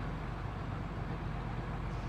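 A steady low mechanical rumble, like an engine or motor running, with a faint hiss above it.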